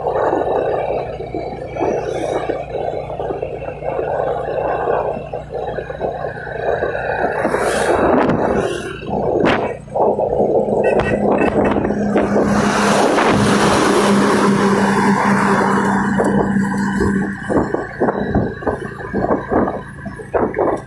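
Wind buffeting a phone microphone over the running noise of the vehicle it is riding in, loud and gusty throughout. A steady low hum is held for several seconds in the middle, where the rush is loudest.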